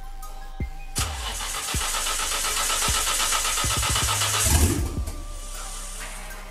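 Nissan Skyline R32 GT-R's RB26DETT twin-turbo straight-six being cranked by the starter for about four seconds, a rapid rhythmic churning that ends in a brief louder, deeper burst near the end, on the engine's first start after a rebuild with forged internals. Background music with a steady beat plays throughout.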